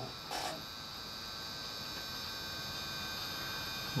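Motorised go-to telescope mount slewing to a target: a steady electric motor hum and whine with several high steady tones, slowly getting a little louder. A brief rustle comes just after the start.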